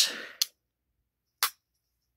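Two short, sharp clicks about a second apart as the bottle opener of a Victorinox Adventurer Swiss Army knife is pried out and snaps open on its spring.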